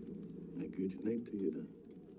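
Muffled, narrow-band TV drama soundtrack. About a second in, three short voice-like sounds rise above a steady murmur.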